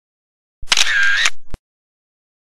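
Camera shutter sound effect: about a second of shutter sound ending in a sharp click, with dead silence around it.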